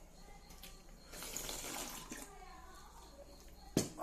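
Broth being poured from a small steel bowl onto rice in a steel plate, a soft splashing pour of about a second. Near the end, a single sharp knock as the steel bowl is set down on the table.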